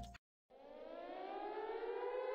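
Electronic music cuts off abruptly, and after a brief gap a single synthesized tone fades in and glides slowly upward in pitch, growing louder: a siren-like riser sound effect.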